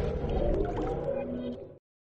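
Tail of a TV channel's electronic intro jingle fading out, ending in a brief dead silence near the end.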